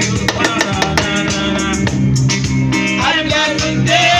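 Live band music: an electronic keyboard playing with hand-drum and shaker-like percussion keeping a steady beat, and a man's singing voice coming in near the end.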